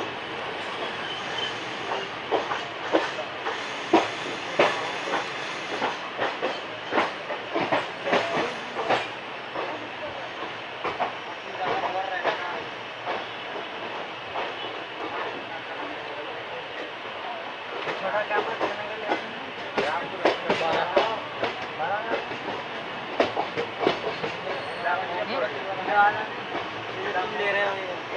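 A moving passenger train's wheels clattering over rail joints, heard from an open coach door: a steady running rumble broken by many irregular sharp clicks and knocks.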